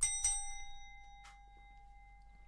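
A stemmed wine glass clinks twice in quick succession and rings out with a clear, fading tone.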